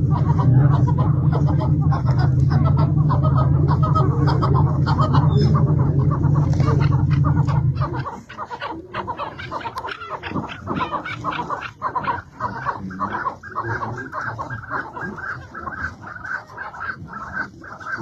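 Chukar partridges calling in rapid, repeated clucking notes. For the first eight seconds a loud, steady low hum runs under the calls, then cuts off abruptly.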